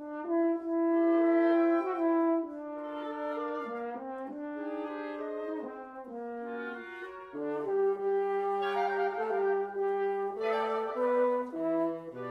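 Wind quintet of flute, oboe, clarinet, bassoon and French horn playing together, opening on a loud held note. Lower parts come in about seven and a half seconds in, with quick running notes in the upper parts near the end.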